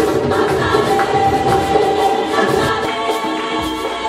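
Gospel choir singing in harmony over a steady hand-drum beat from a djembe.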